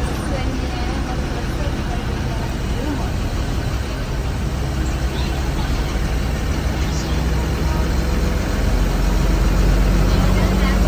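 Bus engine and road noise heard from inside the driver's cabin while cruising on a highway: a steady low engine drone with tyre and wind rush, the drone growing a little louder near the end.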